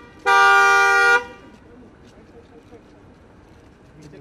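Car horn sounding one steady blast of about a second, two pitches together, starting just after the start and cutting off sharply.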